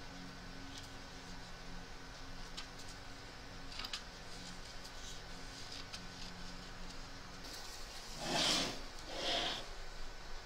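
Faint snips and handling of small scissors trimming fabric and stabiliser on an embroidery hoop, over a low steady hum. Two louder rustles of fabric come near the end.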